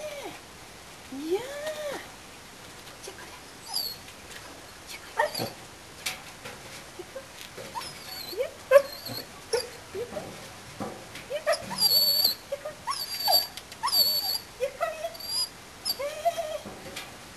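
Dog whining and whimpering in a string of short, high-pitched whines, some rising and falling, with a burst of very shrill squeaks about three quarters of the way in.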